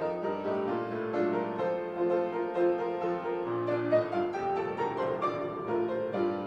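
Solo piano playing offertory music, a steady flow of sustained melody notes and chords.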